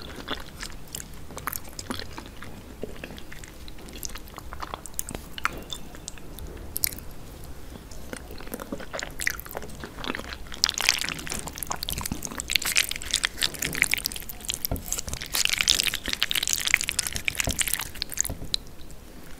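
Close-miked chewing of jajangmyeon (black bean noodles in thick sauce): sparse wet mouth clicks, becoming louder and denser about ten seconds in and again near the end.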